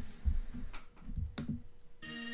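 A few soft low thumps and a couple of short clicks over a faint steady hum.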